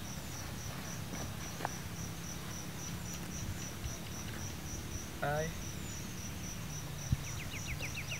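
An insect chirping steadily in a high, even pulse of about five chirps a second, over a low steady background hum. Near the end a faster ticking trill joins in.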